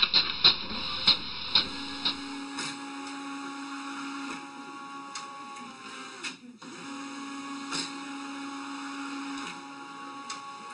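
Canon all-in-one inkjet printer running, a steady mechanical whir with a low hum; it stops briefly a little past the middle and then starts again. A few sharp clicks come before it in the first two seconds.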